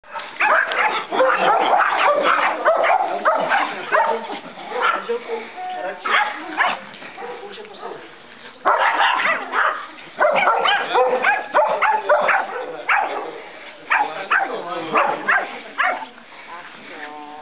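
Small dog barking over and over in two long runs, with a quieter lull from about six to eight and a half seconds in.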